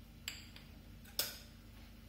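Two short, faint clicks about a second apart over a low steady hum.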